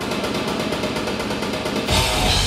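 Live rock band opening a song: a fast, evenly repeated pulse at about a dozen strokes a second, then the full band, drums and bass, comes in just before the end.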